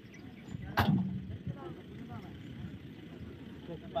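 A single sharp bang about a second in, with a short low ring after it, over faint voices and a low outdoor rumble.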